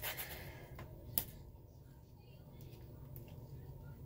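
Faint handling of objects by hand, with one sharp click about a second in, over a low steady room hum.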